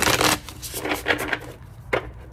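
An oracle card deck being shuffled by hand, loudly: a sharp rush of cards at the start, a second, longer shuffle about a second in, and a short snap near the end.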